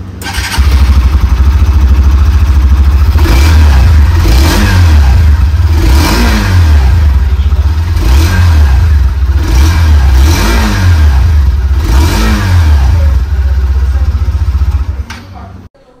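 Hero Xtreme 160R 2.0's single-cylinder engine running, with a series of throttle blips, each revving up and falling back, about one every second or so. It cuts off near the end.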